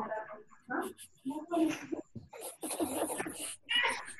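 Voices singing a song without words, on one repeated sound, in short phrases with brief gaps between them, heard through a video call's compressed audio.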